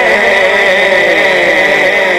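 Male naat reciter holding one long unaccompanied sung note through a reverberant sound system, its pitch sliding slowly down.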